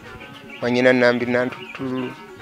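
A man speaking, in two phrases separated by a short pause.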